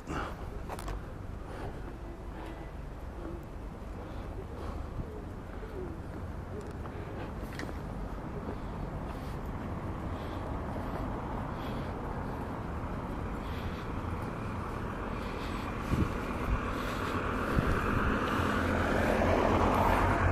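A car approaching along the street, its tyre and engine noise growing steadily louder over the second half, over a low steady street background.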